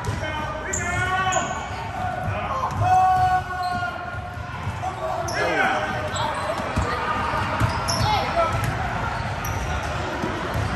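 Youth basketball game on a hardwood court in a large gym: the ball bouncing on the floor, short high sneaker squeaks, and voices of players and spectators shouting and calling out in the hall.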